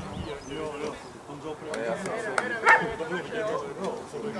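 Indistinct talking voices at an outdoor football ground, with one short, louder call about two-thirds of the way in.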